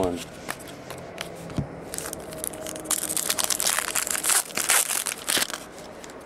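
A trading-card pack's wrapper crinkling and tearing as it is opened: a dense crackle from about two seconds in until shortly before the end, after a few light clicks of cards being handled.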